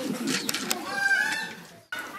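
A bird calling, with a short rising note about a second in, over faint voices and a few sharp clicks; the sound cuts off suddenly near the end.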